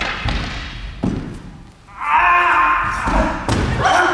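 Thuds and knocks from a choreographed wooden-sword fight: bare feet stamping and landing on a wooden gym floor, ringing in the large hall. About two seconds in, a loud shout lasting about a second, a fighter's cry, followed by two more sharp thuds near the end.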